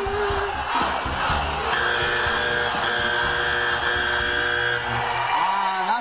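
A woman's dog-like howled singing note ends about half a second in, followed by audience noise and a steady sustained chord of several pitches held for about three seconds.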